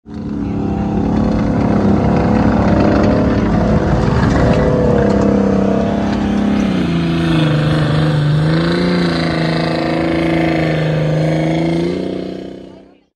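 M4 Sherman tank driving at speed, its engine running loud and steady; the engine note drops in pitch about seven seconds in and holds lower.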